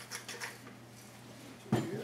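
Salt shaker being shaken over a blender jar: a quick run of light rattling ticks, then a single loud knock a little before the end.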